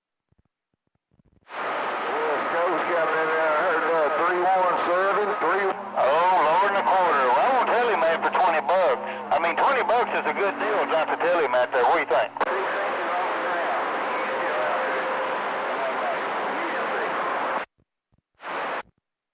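CB radio receiver on channel 28 opening squelch about a second and a half in on a skip transmission: hissy static carrying a distorted, warbling voice that the recogniser could not make out. The voice gives way to static with a faint steady tone, and the squelch cuts it off suddenly near the end.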